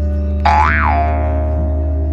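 Background music made of sustained tones, with a comic 'boing' sound effect about half a second in: a sudden note whose pitch slides up and back down, then fades out.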